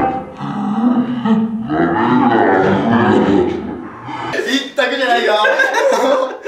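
Several men laughing hard and talking over one another. Near the end the sound changes and light background music comes in under the voices.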